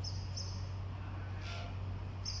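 A steady low hum, with two short high chirps near the start and a brief hiss about halfway.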